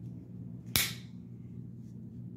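Cold Steel Ti-Lite folding knife snapped open, the blade locking with one sharp click about three-quarters of a second in.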